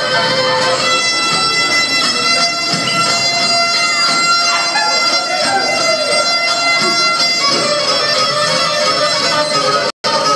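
Black Sea kemençe, a small three-string bowed fiddle, playing a lively dance tune as one continuous melody with held, drone-like notes.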